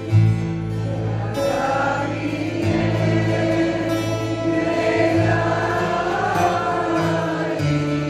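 Mixed choir singing a Greek song over a folk ensemble of bouzoukis, accordions, violin, guitars and bass, with a bass line moving under the voices.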